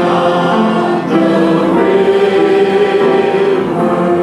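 Several voices singing a worship song together, the notes held and sustained.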